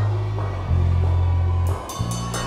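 Live rock band playing an instrumental passage with bass, drums and guitar and no singing. Long low notes are held, changing about two-thirds of a second in, with sharp drum and cymbal strokes near the end.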